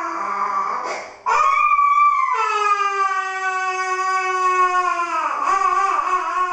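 Small child crying: a first cry, then a long wail that slowly falls in pitch, and another cry near the end, while having a finger pricked for a blood test.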